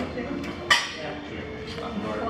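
Bar gear clinking: a light tick and then one sharp clink, about half a second and three-quarters of a second in, as the cocktail shaker and glasses are handled after shaking.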